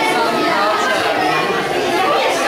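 Indistinct chatter: several people talking over one another, with no single voice standing out.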